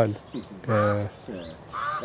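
A bird calling twice, near a second in and again near the end, over a man's voice.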